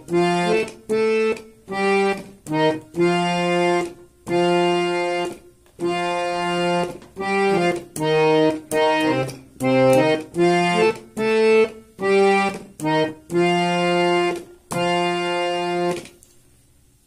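Harmonium playing the melody of a Nepali lok dohari folk song one note at a time. The notes are reedy and detached, of mixed lengths, with short breaks between them.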